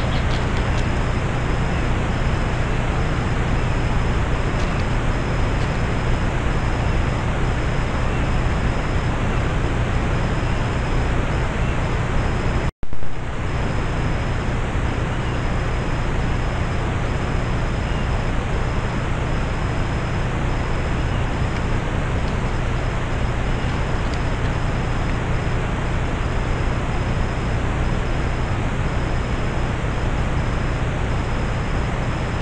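Steady loud hiss with a low hum and a faint pulsing high whine, typical of a trail camera's own microphone and electronics noise. About 13 seconds in, the sound cuts out for an instant, then comes back with a brief louder bump, where one camera clip joins the next.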